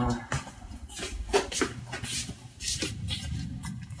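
Footsteps and shuffling as people walk through a small room, with irregular light knocks and a low rumble of the camera being handled while it is carried.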